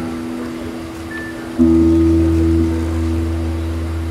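Live blues band playing: a guitar chord fades, then about one and a half seconds in a low chord with a deep bass note is struck and held, ringing steadily.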